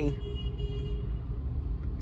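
Low, steady rumble of a Maruti Suzuki Brezza idling, heard from inside the cabin, with a faint tone that fades out in the first second.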